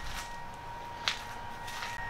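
Two soft footfalls about a second apart on a shaving-strewn shop floor, over quiet room tone with a faint steady high whine.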